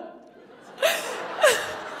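Audience laughing. Two loud, short laughs with a falling pitch stand out about a second in and half a second later, over general laughter that then slowly dies down.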